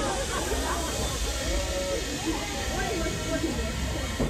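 Riders' voices chattering and calling out at the base of a free-fall drop tower just after the drop, over a steady hiss that runs until a sudden cut just after the end.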